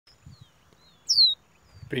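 Caged caboclinho (seedeater) whistling: a few short, faint downslurred notes, then a clear, louder falling whistle about a second in.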